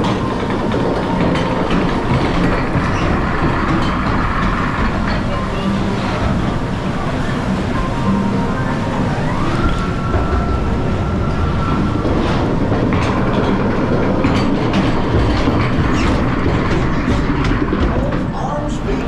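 Log flume lift conveyor carrying a loaded log boat up the incline: a steady, loud mechanical clatter mixed with running water.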